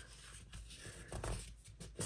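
Faint rustling and creasing of a paper napkin being folded by hand, a little louder just past the middle.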